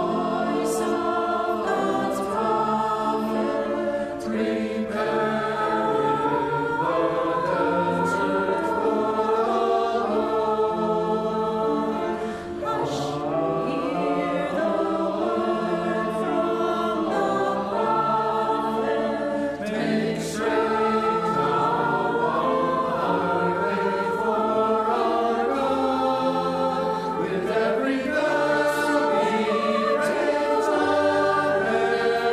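Mixed choir of men's and women's voices singing a sacred anthem in harmony, with the words "Hush! Hear the voice of God's prophet: 'Prepare in the desert for the Lord'" and "Make straight now a highway for our God."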